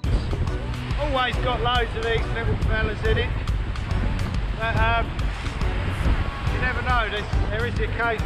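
A man talking over steady wind buffeting the microphone and surf washing in.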